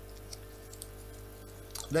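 Two faint small clicks from the Dyson DC25's brush-roll on/off microswitch as its little metal lever is pushed, over a steady low electrical hum.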